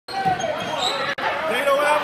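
A basketball being dribbled on a hardwood gym floor during a game, with players' and spectators' voices calling out in the hall.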